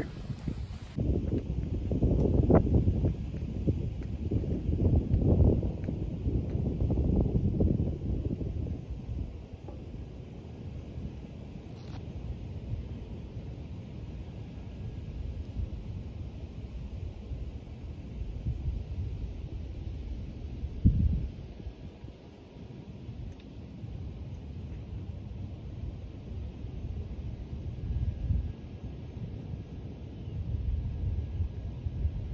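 Wind buffeting the microphone outdoors: a gusty low rumble, strongest in the first third, then a steadier, quieter rush. A single brief thump about two-thirds of the way through.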